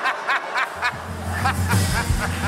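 A woman laughing in quick, short bursts, with music carrying a deep bass line coming in under it about a second in.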